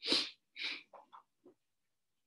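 A person's sharp, loud burst of breath noise. About half a second later comes a softer second burst, then a few faint short sounds.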